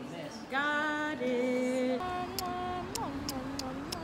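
A woman singing a slow melody unaccompanied, holding long steady notes and stepping between pitches. About two seconds in, the background changes to street noise under the singing, with a few sharp ticks.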